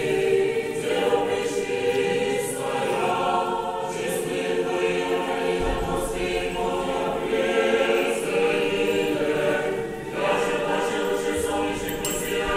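Orthodox church choir singing a cappella, a hymn of glorification to the Mother of God, in sustained chords that move in slow phrases, with a short break about ten seconds in before the next phrase.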